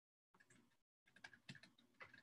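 Typing on a computer keyboard: faint, quick key clicks in an irregular run, starting about a second in.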